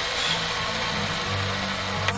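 Steady car engine and road noise heard inside the cabin, a low even hum under a wash of hiss.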